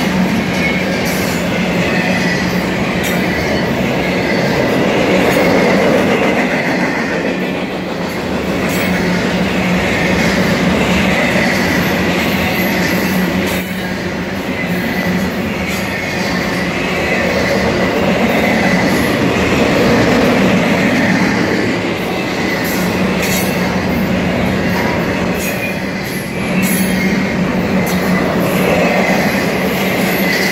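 Intermodal freight cars rolling past at speed: a continuous rumble of steel wheels on rail that swells and eases every few seconds. A high whine wavers in and out over it, with scattered sharp clicks.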